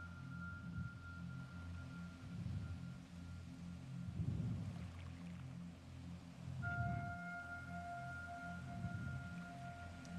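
Soft, quiet ambient background music: a low pulsing drone under a held high tone that fades out about halfway, with a new pair of held tones coming in about two-thirds of the way through.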